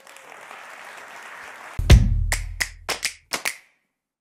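Audience applauding for nearly two seconds, then a short musical outro sting: one deep bass hit, the loudest sound, followed by a quick run of about six sharp percussion strikes.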